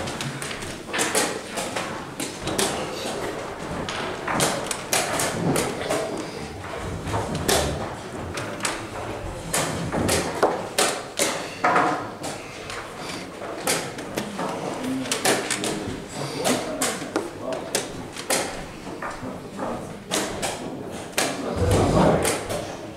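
Wooden chess pieces set down on a board and chess clock buttons pressed in quick blitz play: a fast, irregular run of sharp knocks and clicks.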